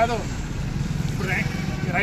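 Steady low rumble of street traffic with a vehicle engine idling nearby, under a man's speech that breaks off for about a second in the middle.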